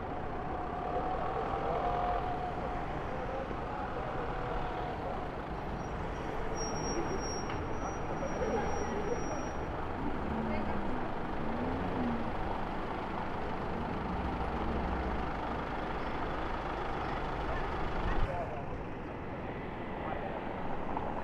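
City street traffic, a steady rumble of cars passing at low speed, with people talking in the background. A brief knock near the end, where the sound changes abruptly.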